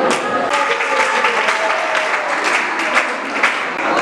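Audience applauding, a dense patter of claps, with voices and music mixed in underneath.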